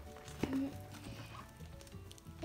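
Quiet background music with steady held notes, and one brief sharp sound about half a second in.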